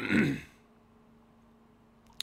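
A man clears his throat once, a short rasp of about half a second. After it comes quiet room tone with a faint steady hum.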